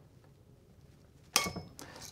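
A torque screwdriver's clutch letting go with one sharp metallic click and a brief ring, about two-thirds of the way in, followed by a fainter click. It is the sign that the receptacle's terminal screw has reached its set torque of 14 to 16 inch-pounds.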